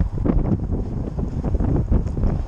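Wind buffeting the microphone: a loud, uneven low rumble with a few short knocks.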